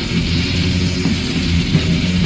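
Black/death metal music from a 1994 cassette demo: heavily distorted electric guitars playing a continuous riff in a dense, loud full-band mix.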